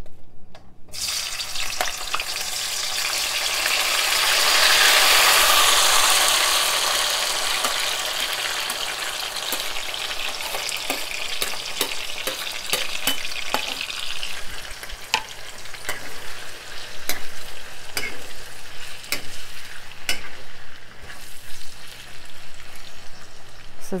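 Chopped onion, tomato, scallion and chili pepper dropped into hot vegetable oil, sizzling suddenly about a second in and loudest a few seconds later. It then settles into a steady fry, with sharp clicks of a utensil stirring against the pan.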